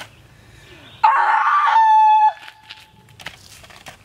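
One loud, harsh cry about a second long, starting rough and ending on a held steady note that cuts off sharply.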